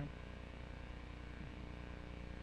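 Quiet room tone: a steady low hum with a faint hiss.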